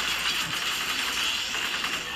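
Movie gunfight sound: rapid gunfire with stone debris clattering, in a dense, unbroken din. It plays through a TV speaker and is picked up by a phone, so it sounds thin and boxy.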